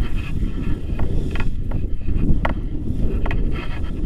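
Airflow buffeting the microphone of a selfie-stick action camera on a tandem paraglider in flight, a loud gusty rumble, with a few short sharp clicks scattered through it.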